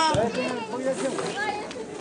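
Voices outdoors: speech, with children's voices and crowd chatter behind it.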